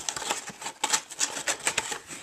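Cardboard beer-kit box being opened and handled: an irregular run of quick clicks and taps.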